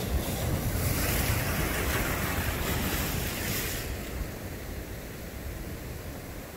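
Ocean surf breaking and washing over a rocky shore: a steady rushing hiss with a low rumble, which thins out about four seconds in.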